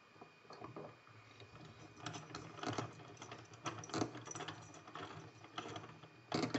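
Irregular small metallic clicks and rattles from a six-pin Mila euro cylinder lock being worked by hand, in clusters that are loudest around the middle.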